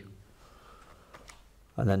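Faint clicks of buttons being pressed on a handheld scientific calculator.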